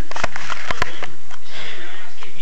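Sniffing close to the microphone, with a few sharp clicks and rubbing as the small camera is moved against bedding.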